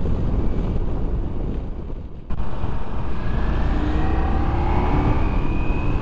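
Ducati Multistrada V4S's V4 engine and wind rush at road speed, heard from the bike itself. The sound dips briefly and cuts back in sharply a little over two seconds in. In the second half a faint engine whine climbs slowly as the bike accelerates.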